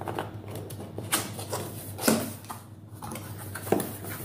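Corrugated cardboard box lid being pried open and lifted by hand: rustling and scraping of cardboard with a few sharp clicks and scrapes as the flaps come free.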